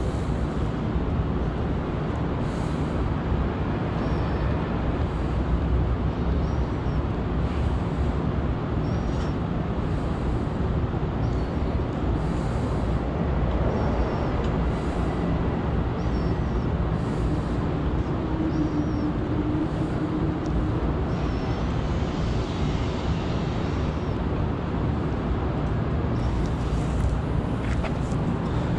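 Steady city street noise: the low rumble of traffic and vehicles, with faint high chirps repeating every second or two.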